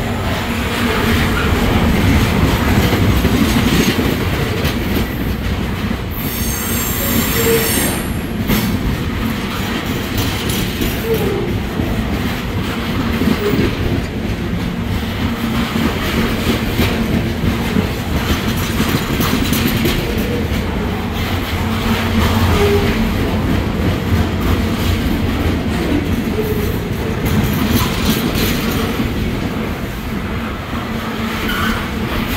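Freight train of waste-container cars rolling past at close range: a steady rumble and clatter of steel wheels on the rails, with brief wheel squeals now and then and a short high-pitched squeal about seven seconds in.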